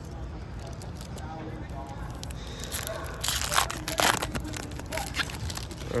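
Wrapper of a Topps Finest baseball card pack being torn open and crinkled, with the cards being handled, in a few crackling rustles about three to four seconds in.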